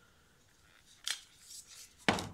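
Quiet handling noise from an angle grinder and its cord being lifted out of a plastic carry case: a short sharp click about a second in, followed by faint rustling.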